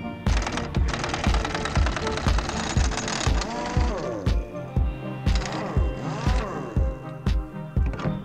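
Background music with a steady thumping beat. Over it, an impact wrench hammers at a rusty suspension bolt in two rattling bursts: one lasting most of the first three seconds, and a shorter one about five seconds in.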